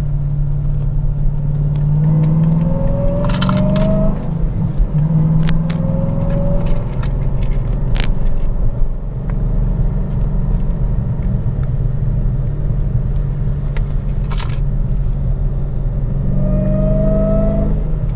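Supercharged 6.2-litre Hemi V8 of a Hennessey HPE850-tuned Dodge Challenger Hellcat driving with its exhaust cutouts closed, heard from inside the cabin: a steady low rumble, the quieter setting of the cutout valves. A faint tone rises in pitch three times as the engine pulls.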